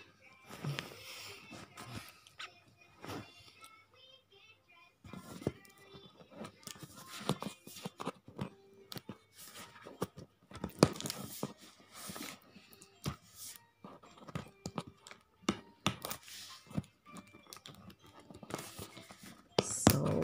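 Hands handling a cardboard microphone box: irregular sharp taps, scrapes and crinkles of the packaging. Faint music plays in the background.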